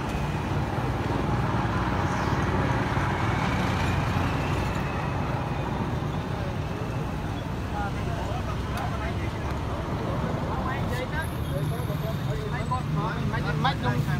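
Steady road traffic noise with a low engine rumble, with bystanders talking over it; the voices become clearer near the end.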